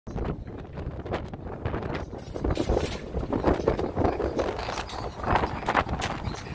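Wind rushing and buffeting over the microphone on the open deck of a small ferry under way, with the wash of choppy water around the hull underneath.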